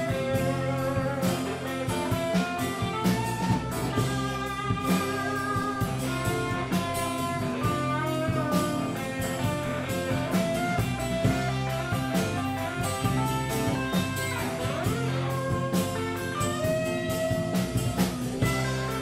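Live blues band playing an instrumental passage: a red electric guitar plays lead lines over a strummed acoustic guitar and an electric bass, with a steady beat throughout.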